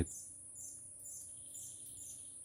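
Forest insects and birds: a steady, high insect buzz with a high chirp repeating about two or three times a second, faint.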